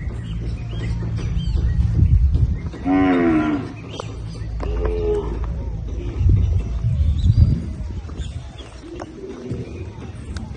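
Gyr cattle mooing: one loud moo about three seconds in, then a shorter, higher moo about a second later.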